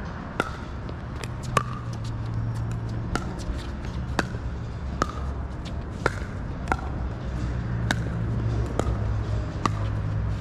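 Pickleball paddles striking a plastic pickleball back and forth in a rally: a sharp hit with a short ring about once a second. Fainter hits fall in between, over a steady low hum.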